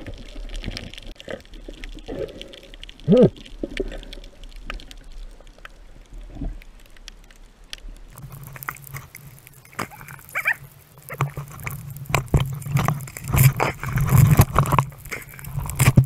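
Underwater sound picked up by a diver's camera: scattered clicks and crackles, with one short low pitched sound about three seconds in. From about halfway, louder rushing and sloshing water with dense knocks, as the diver swims up just under the surface.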